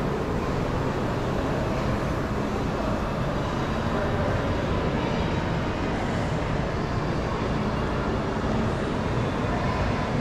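Steady, even background hum of a large indoor shopping mall, with no distinct events.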